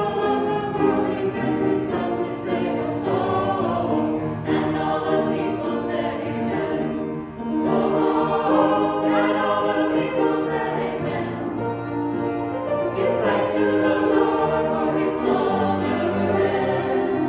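Small mixed church choir singing together in held, sustained notes, with a brief dip for a breath between phrases about seven seconds in.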